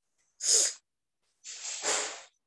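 Two breathy hisses from a person close to a microphone: a short, sharp one about half a second in, then a longer, fuller one from about a second and a half.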